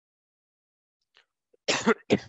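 A man coughing: a sharp cough near the end, with further coughs following.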